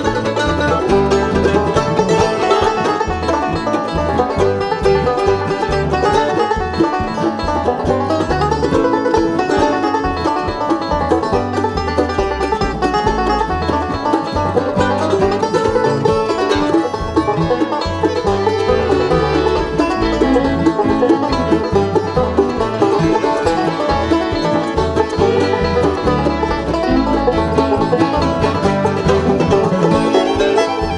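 Acoustic bluegrass band playing an instrumental at a steady level, the banjo to the fore over mandolin, acoustic guitar, upright bass and fiddle.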